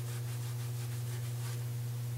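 A steady low electrical hum with a faint hiss: background room tone.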